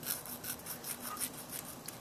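Small sanding stick rubbed back and forth in quick short strokes, several a second, along the edge of a thin black model-kit casting, sanding off burrs and flashing.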